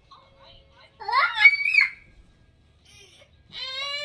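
A toddler's voice: a sharp squeal climbing in pitch about a second in, then near the end a long, steady, high-pitched whine.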